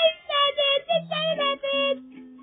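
A high, child-like voice singing a tune over music, with held low musical notes underneath in the second half.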